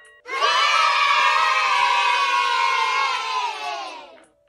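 A crowd of children cheering together in one long shout that starts a moment in, sinks slightly in pitch and fades out near the end.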